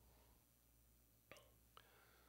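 Near silence: room tone, with two faint short clicks about a second and a half in.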